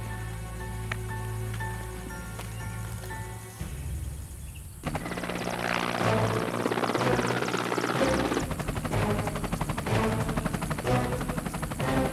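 Soundtrack music with sustained tones. About five seconds in, military helicopters come in over it, their rotors beating with a fast, even chop to the end.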